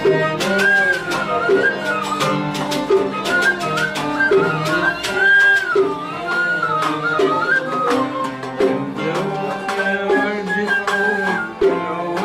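Small Arabic ensemble playing an instrumental passage: a flute and violin carry an ornamented, gliding melody over rapidly plucked oud notes.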